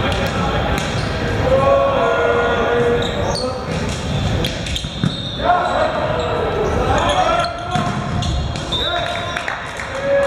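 Indoor volleyball rally in a large echoing gym: the ball is struck with sharp slaps on the serve and passes, while players shout calls to each other.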